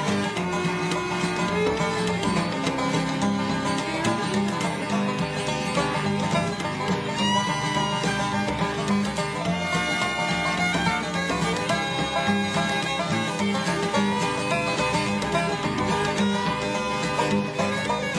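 Live country band playing an instrumental passage with no singing: banjo and fiddle over acoustic guitar and bass, with some sliding notes.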